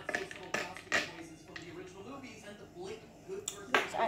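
Spoon stirring in a glass of hot chocolate, clinking sharply against the glass a few times, the last clink near the end the loudest. A voice talks in the background.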